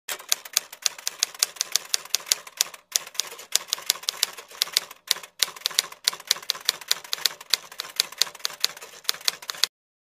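Typewriter keystroke sound effect: a fast run of sharp key clicks, about four or five a second with a few brief pauses, cutting off suddenly near the end. It goes with text being typed out on screen.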